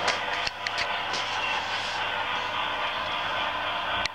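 HO-scale model train running on the layout: a steady electric motor hum under a continuous rattling noise, with scattered sharp clicks.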